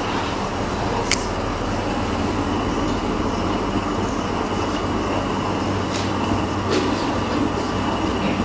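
Steady hum and hiss of room air conditioning, with a low electrical hum beneath it, broken by a few faint clicks.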